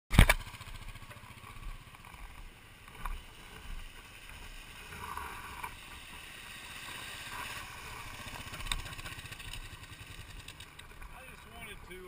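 A sharp knock right at the start, then a motorcycle idling close by while another dual-sport motorcycle rides through a shallow river crossing, its engine and splashing louder around the middle.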